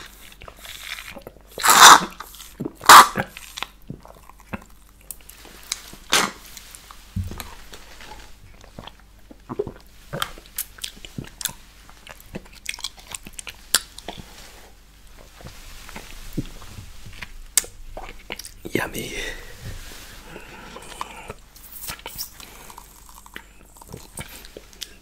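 Close-miked mouth sounds of drinking a thick strawberry milkshake straight from the rim of a plastic cup: slurps, wet lip smacks and clicks. Two loud slurps come about two and three seconds in, then quieter wet clicks follow on and off.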